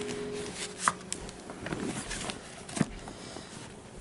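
A large hardcover textbook being closed and handled together with a paper notebook: a few short dull knocks, about a second in and again near three seconds, with light paper rustling between.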